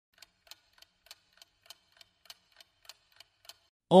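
Faint ticking of a clock sound effect used as a quiz countdown timer, about three even ticks a second, stopping shortly before the end.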